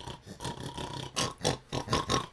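A man imitating a pig's oinking with his voice: a few short, rough noises, mostly in the second half.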